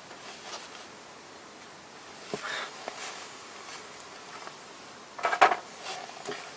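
Faint clicks of hand tools and bolts against the steel of a car's front suspension, with a louder metallic clatter about five seconds in.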